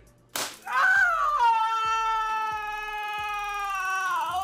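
A woman's long, high, held scream as she takes a Taser shock in police training, starting just under half a second in with a short sharp crack and then held at a steady pitch after a brief downward glide.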